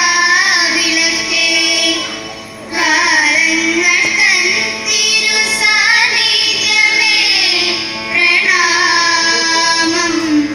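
Schoolchildren singing a melodic song into a microphone, amplified over a PA system, in long held phrases with brief pauses between them.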